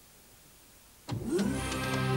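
About a second of near silence, then an animated cartoon's sound effect: a quick rising whir that settles into a steady hum.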